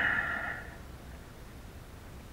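A man's voice finishing a word in the first moment, then low steady background noise with no distinct event.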